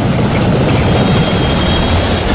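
Sound-effect soundtrack of an animated TV intro: a loud, steady rumbling noise as walls are smashed, with no distinct single impact.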